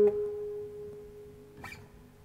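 A single note on a three-string cigar box guitar rings out after a click and fades away over about a second and a half, ending the phrase of a hammer-on and pull-off exercise. A faint tick comes near the end.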